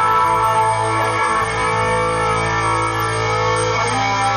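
Live band playing a long held chord on electric guitar over bass, shifting to a new chord near the end.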